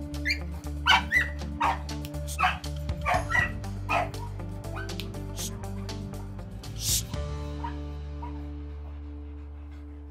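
A dog barking repeatedly, about a dozen short sharp barks in the first seven seconds, over background music with a steady beat; the barking stops about seven seconds in and the music carries on alone.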